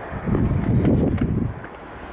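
Wind buffeting the microphone: an irregular low rumble that eases off in the second half.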